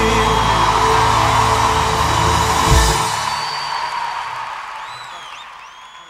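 A live orchestra holds the song's final chord and ends it with a last accented hit about three seconds in, under a large audience cheering. The cheering, with a few whistles, then fades out.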